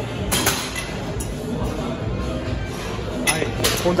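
Weight-stack plates of a seated row machine clinking a few times, twice about half a second in and twice near the end, as the stack lifts and settles, over steady gym background music.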